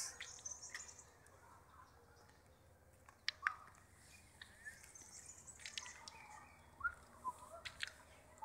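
Faint outdoor ambience with a few short, distant bird chirps, mostly near the end, and a few light clicks.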